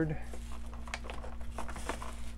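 Clear plastic packaging crinkling and clicking as hands handle a plastic clamshell tray and bagged parts: a run of irregular small crackles.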